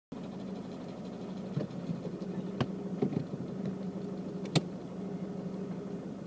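Car engine running steadily at low speed on a rough dirt track, with a few sharp knocks as the car jolts along, the loudest one late on.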